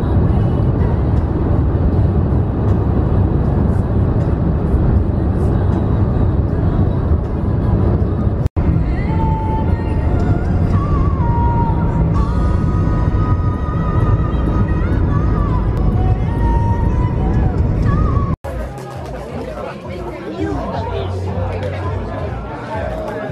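Steady road and engine noise heard from inside a car cabin at motorway speed. After a cut, music with a held, gliding melody. After a second cut near the end, people chattering.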